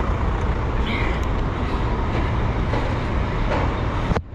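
Busy city street traffic: a steady rumble and wash of passing vehicles.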